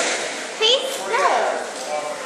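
Children's voices shouting and calling out without words: a loud short wavering cry about half a second in, then a call that rises and falls just after a second.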